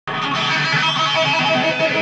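Electric guitar played with both hands tapping on the fretboard: a fast, unbroken stream of notes that starts right away.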